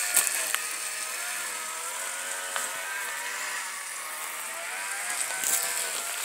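A weed-killer sprayer hissing steadily as it sprays from the nozzle over gravel, with a faint wavering hum underneath.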